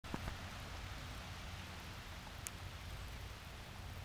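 Faint, steady hiss of light rain outdoors, with a low rumble under it and a few small clicks near the start and about two and a half seconds in.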